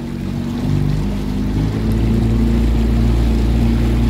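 Motorboat engine running, its note shifting and growing a little louder during the first two seconds.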